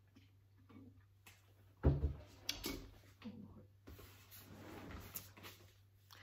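Faint movement noises with a dull thump about two seconds in, a few light clicks just after, and a brief low murmur of a voice.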